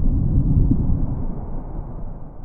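Deep rumbling sound effect of an animated logo intro: a low, noisy rumble with no tone in it that fades out gradually.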